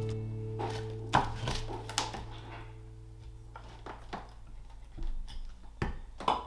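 Carving axe chopping into a green-wood spoon billet on a chopping block: a string of short, sharp strikes at uneven intervals, roughly one every half second to a second. Background music holds a low sustained chord under the first half.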